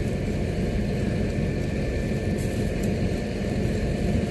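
Tractor engine idling, a steady low rumble.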